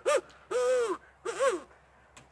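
Hand-held deer call blown to imitate a young fawn bleating in search of its mother: three bleats, each rising then falling in pitch, the middle one the longest.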